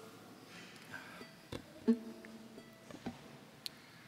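Soft plucked guitar notes: a faint pluck about a second in, then a note struck about two seconds in that rings for about a second, with a few small clicks around it.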